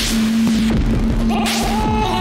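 Downtempo electronic blues played on analog modular synthesizers: a steady low synth drone under noisy snare-like hits, one at the start and another about a second and a half in. A higher synth chord comes in near the end.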